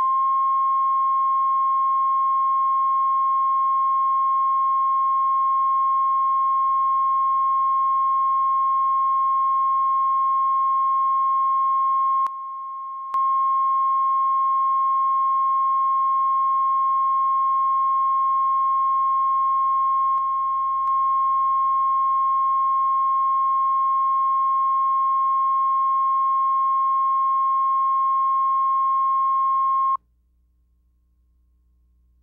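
Steady 1 kHz line-up test tone played with colour bars at the head of a videotape, used to set audio levels. One unbroken sine tone, with a brief dip in level a little after twelve seconds in.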